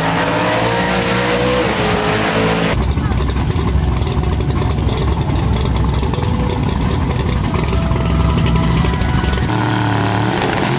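Drag race car engines running at the start line as the cars stage. About three seconds in the sound changes abruptly to a deeper, heavier engine sound, with voices in the background.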